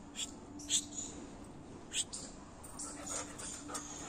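American Pit Bull Terrier panting in short, sharp breaths, about five in a few seconds, with a faint low whimper underneath.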